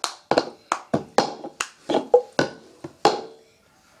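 Cup song rhythm, the 'forward' variation: hand claps and a plastic cup tapped and knocked on the floor, about a dozen sharp strikes in a quick beat that stop a little before the end.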